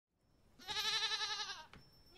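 A sheep bleating once: a single wavering call of about a second that starts about half a second in and drops in pitch as it ends.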